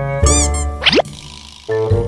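Comedic cartoon sound effects over light edit music: a springy boing about a quarter second in, then a fast rising whistle-like glide just before one second, followed by short musical notes near the end.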